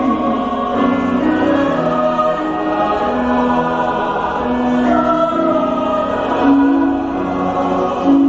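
A mixed choir singing slow held chords that shift every second or so, with a male soloist singing into a microphone in front of them at the start.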